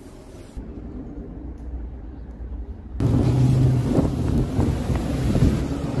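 Car traffic on a street with wind buffeting the microphone. It is muffled at first, then about halfway through it jumps abruptly louder, with a steady low engine hum from a vehicle driving by.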